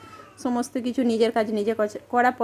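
A woman speaking in short phrases, starting about half a second in after a brief pause.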